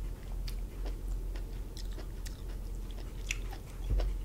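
Close-up chewing of cooked lobster tail meat, with small wet clicks and smacks of the mouth scattered through it. A low steady hum runs underneath.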